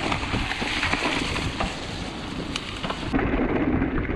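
Mountain bike tyres rolling through wet mud and leaves, with a dense hiss and spatter of flung mud and a few sharp ticks from the bike, over wind rumble on the camera microphone. About three seconds in the spattering stops suddenly and the low wind rumble takes over.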